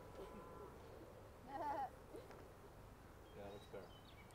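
Quiet outdoor ambience with faint, distant voices: a short call about one and a half seconds in and another brief one near the end.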